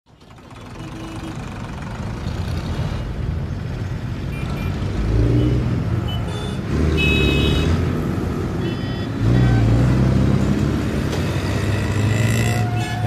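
Road traffic: motor vehicle engines running, fading in from silence at the start. They grow louder about five seconds in and again about nine seconds in.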